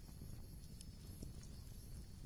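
Faint steady background hum and hiss with a few soft, scattered ticks.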